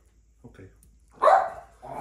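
A dog barks once, loudly and briefly, a little past the middle.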